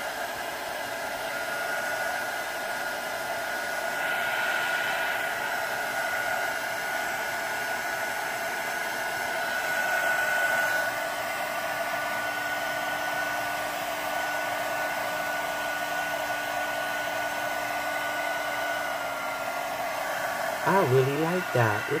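Handheld electric dryer blowing hot air over freshly applied nail-art pen gel to dry it: a steady blowing noise with a high whine. A lower hum joins about halfway through.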